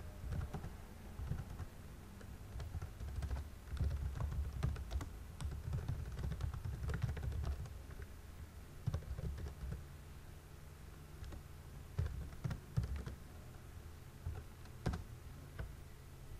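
Typing on a computer keyboard: irregular runs of keystrokes, densest in the first half, with a few sharper key presses later on.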